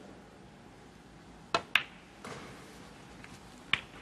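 Snooker cue tip striking the cue ball, followed a fraction of a second later by the click of the cue ball hitting the pink. A softer sound of the potted ball running into the pocket follows, then one more sharp ball click near the end.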